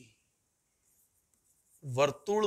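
Faint scratching of chalk writing on a blackboard during a pause in speech, with a man's voice starting again near the end.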